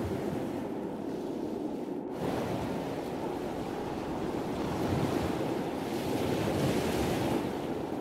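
A steady rushing noise without any pitch, briefly dipping about two seconds in and swelling gently around the middle and again near the end.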